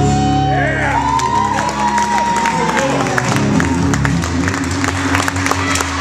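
Acoustic guitar strummed and ringing, with an audience whooping and clapping over it.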